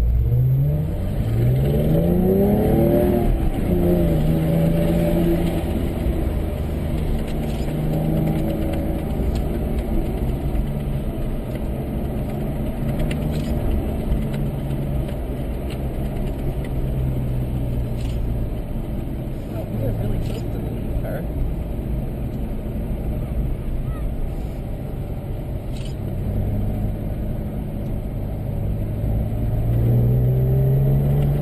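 A Porsche's engine heard from inside the car, in sport mode. The revs climb hard at the start, then hold at a fairly steady moderate level with small rises and falls, and climb again near the end. The engine sounds tough.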